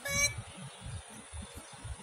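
A short, high-pitched vocal call from a young child right at the start, over a low rumble of wind on the microphone.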